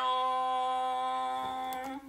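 A solo singing voice holds one long, steady note, the closing note of the song, and stops at the end.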